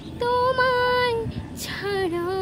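A young woman singing without accompaniment: one long held note with a slight waver, a short breathy hiss, then the next note beginning near the end.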